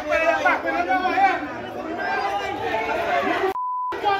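Voices talking, then near the end a short, steady, high beep with all other sound cut out: a censor bleep covering a spoken word.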